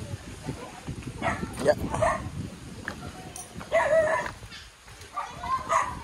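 A dog barking a few times in short bursts, over the shuffle of footsteps on a dirt path.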